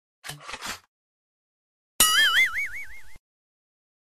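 Edited-in intro sound effects: a quick run of three or four clicks, then about two seconds in a loud cartoon-style warbling tone that wobbles in pitch about five times a second and cuts off suddenly after about a second.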